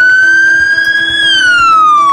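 Ambulance siren sounding one slow wail. The pitch rises steadily until a little past halfway, then falls away.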